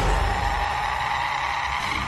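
Horror jump-scare sound effect: a loud, sustained screech held on steady pitches over a low rumble, timed to the demon baby's face.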